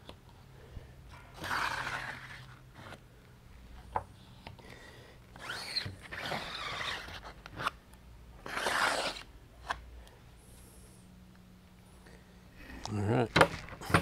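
Ink being scraped and rubbed off the mesh of a silkscreen by hand, in three strokes of a second or two each, with a few light clicks between them.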